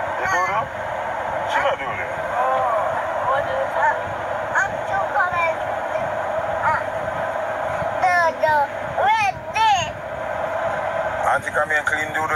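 A man's and a young child's voices inside a car, in short bursts. A higher-pitched child's voice is strongest a little after the middle, all over a steady background hiss.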